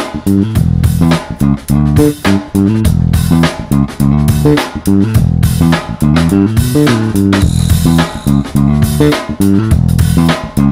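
Five-string Jazz Bass-style electric bass with single-coil pickups and an active/passive three-band preamp, played in a busy line of short, quickly changing notes with sharp attacks.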